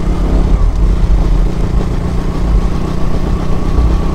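Motorcycle engine running steadily while the bike cruises along a road, heard from the rider's seat, with a heavy low rumble.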